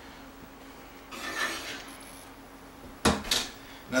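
A metal muffin tin scraping as it is drawn out of an electric oven, followed by two sharp knocks about three seconds in as the oven door is shut.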